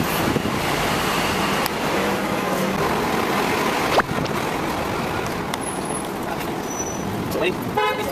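Steady city street traffic noise with background voices, and a car horn tooting.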